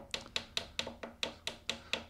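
Light, quick taps, about five a second, as a synthetic TUSQ guitar nut is tapped down into its slot on the neck, a tight fit.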